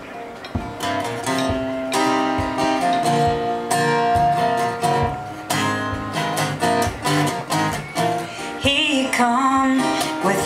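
Acoustic guitar strummed in a steady rhythm as a song's instrumental intro; a woman's singing voice comes in near the end.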